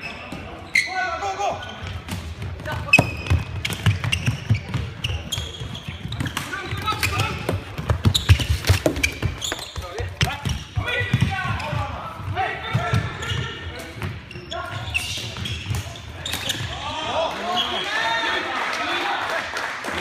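Floorball play in a sports hall: repeated sharp clicks and knocks of sticks and the plastic ball, and footsteps thudding on the court floor, with players' and spectators' voices calling out. The voices crowd together over the last few seconds.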